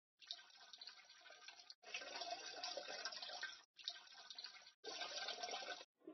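Faint, even hiss of recording and room noise in four short stretches, each cut off abruptly by a moment of dead silence where the overnight footage jumps ahead.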